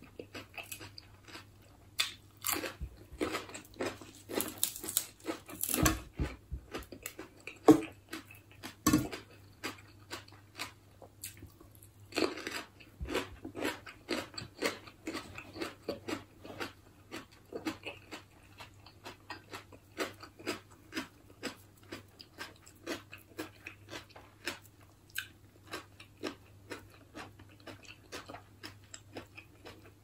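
A person chewing and biting crunchy raw vegetables and snail salad. The crisp crunches are loudest between about six and nine seconds in and again around twelve seconds, with softer steady chewing the rest of the time.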